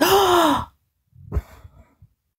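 A woman's loud, breathy voiced gasp lasting under a second and falling slightly in pitch, followed by a fainter breath with a small click.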